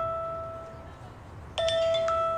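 Mobile phone ringtone for an incoming call: a two-note chime, a lower note then a higher one, fading away. It starts over again near the end.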